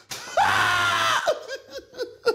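A person's loud, held scream of about a second, starting about a third of a second in and dropping off at the end, followed by a few short quieter vocal sounds.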